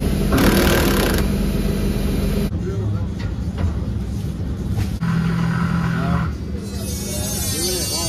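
Cordless drill running in two short bursts, driving self-tapping tek screws into a steel hopper panel, over a steady low hum of machinery.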